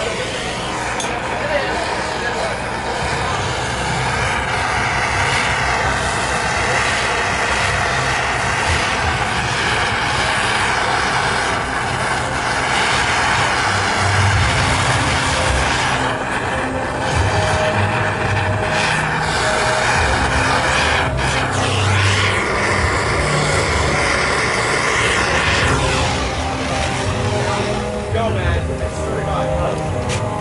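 Handheld gas blowtorch burning with a steady roar as its flame chars the carved wood dark.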